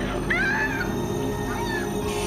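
A woman gives short, high-pitched cries that rise and fall in pitch, three times, over a low, steady synthesizer drone from the film score.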